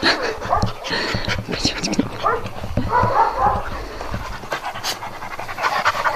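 A dog panting close by, with irregular rustling as its shedding coat is groomed and loose fur is pulled out.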